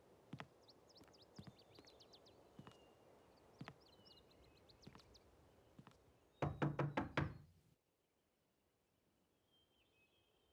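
A fist knocking on a wooden front door with leaded-glass panes: about five quick, loud raps a little past the middle, followed by a sudden drop to near silence.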